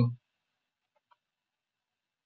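The drawn-out end of a man's spoken "so", then near silence with a couple of faint computer-keyboard key clicks about a second in as text is typed.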